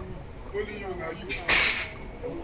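A lash from a blow being struck: a sharp crack about one and a half seconds in, followed at once by a louder, brief noisy smack-swish.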